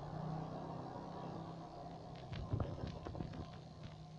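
Quiet background with a steady low hum, and a few faint taps and rustles in the second half.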